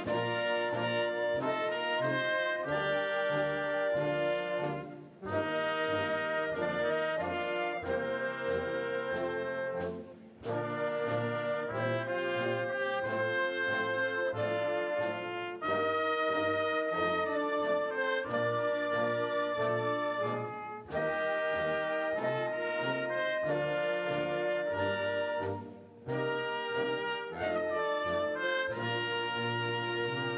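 Concert band playing slow music led by brass in sustained chords, in phrases broken by short breaths about every five seconds.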